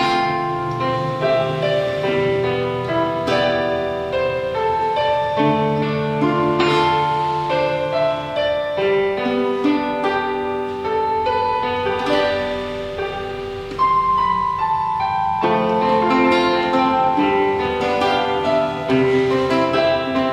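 Instrumental duet of acoustic guitar and digital keyboard playing a piano sound, with held melody notes over chords and no singing. The playing eases off briefly and then comes back in strongly about two-thirds of the way through.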